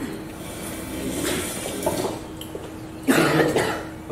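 A person coughs once, loudly, about three seconds in. Before it there is only quiet room noise with a faint steady hum.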